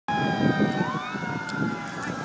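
Sirens sounding: several steady tones overlap, one rising in pitch about a second in, over a low uneven rumble.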